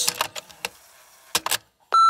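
A few sharp clicks, two of them close together about a second and a half in, then a steady high-pitched electronic beep begins just before the end.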